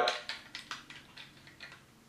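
Small plastic clicks and taps from a plastic transforming robot toy being handled and snapped into its tractor mode: several faint, separate clicks spread through the two seconds.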